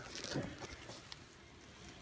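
Quiet room with faint rustling and a few light taps from gloved hands handling the instruments and the drape, loudest in the first half-second.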